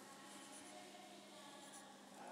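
Faint scratching of a pen writing on a paper sheet on a clipboard, over a low steady hum.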